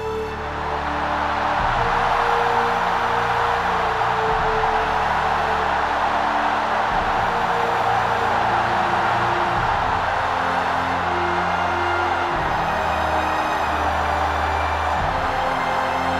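Music with slow, sustained low notes over a loud, even roar from a vast open-air crowd. The roar swells up over the first two seconds, then holds steady.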